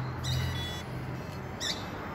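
Small electric water pump starting up and running with a low, steady hum, loudest in the first second, as it begins circulating coolant for a liquid-cooled model aircraft engine. Birds chirp briefly near the start and again near the end.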